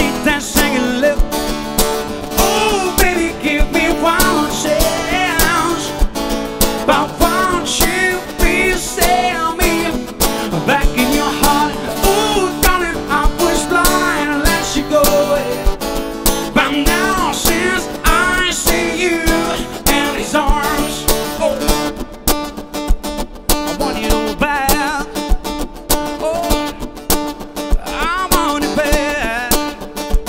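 Acoustic guitar being strummed in a steady rhythm, with a man's voice singing over it.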